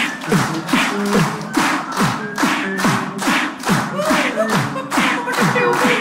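Beatboxing into a handheld microphone: a steady beat of kick-drum thumps with a falling pitch and sharp snare-like hisses, with held hummed tones layered over it and a longer held note near the end.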